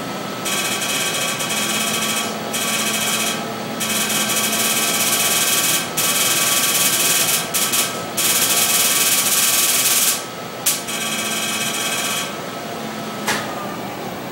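Excimer laser firing during LASIK ablation: a rapid, buzzing crackle of pulses in several bursts with short pauses between them, stopping about twelve seconds in.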